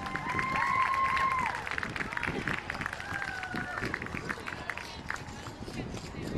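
Clogging taps clicking irregularly on the wooden stage as the dancers walk off after the routine, with a few voices calling out in the first second or so.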